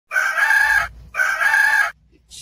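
Rooster crowing twice: two short, loud, evenly pitched calls close together.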